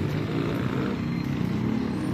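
A motor vehicle's engine running in street traffic, a steady low rumble.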